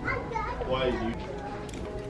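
A child's voice talking in the background through the first second. Near the end come a few light clicks as plastic clothes hangers are pushed along a metal rack.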